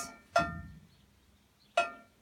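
Aluminium horse-trailer stall divider knocked once, ringing with a clear metallic tone that dies away within about half a second. Another short knock comes near the end.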